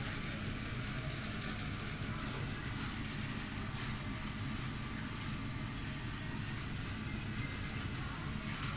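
Steady low rumble with a hiss of background noise, even throughout, with a few faint clicks.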